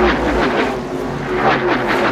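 A vehicle engine sound effect over a loud rushing noise, its pitch falling in short repeated sweeps.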